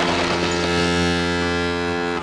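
A single low, horn-like note with a rich, buzzy tone, held steadily and cutting off near the end.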